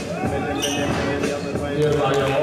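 Basketball bouncing on a gym court floor, with players' and spectators' voices calling out around it.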